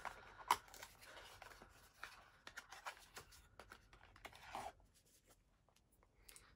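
A cardboard perfume box being opened by hand: faint scraping and rustling of the packaging with scattered small clicks, the sharpest about half a second in.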